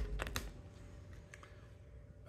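Rigid plastic toploader card holders handled on a wooden table: a sharp click, two lighter clicks just after, then a few faint ticks.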